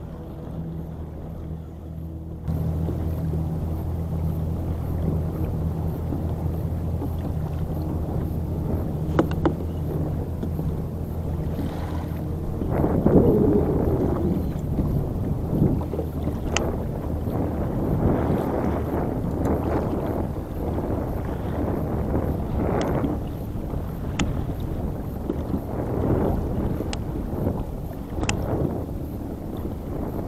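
A boat engine drones steadily, a low even hum that grows louder a couple of seconds in and cuts off after about twelve seconds. After that, irregular splashing of choppy water around the kayak and gusts of wind on the microphone.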